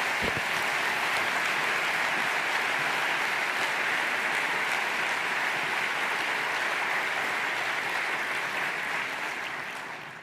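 Audience applauding steadily, dying away near the end.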